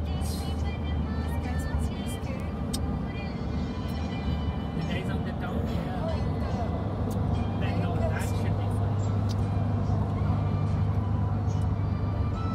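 Steady low engine and road drone heard inside a moving car's cabin, growing a little stronger about seven seconds in.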